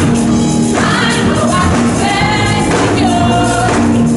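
Live gospel music: voices singing in held phrases over a band with a steady, repeating bass line.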